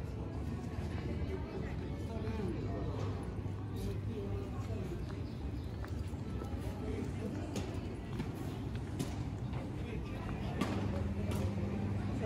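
Street ambience in a stone-paved pedestrian square: background chatter of people at outdoor café tables, scattered footsteps and clicks on the paving, and some music in the mix.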